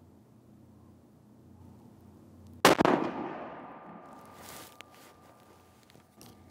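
A single shot from a Sako S20 Hunter bolt-action rifle in .308 Winchester, about two and a half seconds in, sharp and loud, its echo dying away over about a second and a half. A shorter, softer noise follows about two seconds after the shot.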